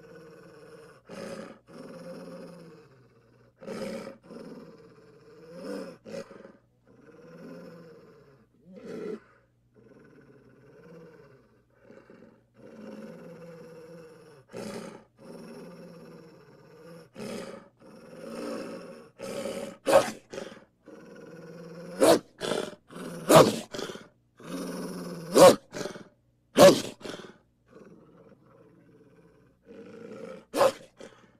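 A wolf growling and snarling in a string of rumbling phrases, each a second or two long. In the second half come five short, sharp and much louder snarls.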